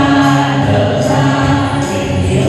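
A mixed group of men and women singing a song together in chorus through microphones, over instrumental accompaniment with sustained low bass notes.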